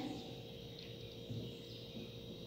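Quiet background noise with a faint steady hum, and one soft low bump a little past halfway.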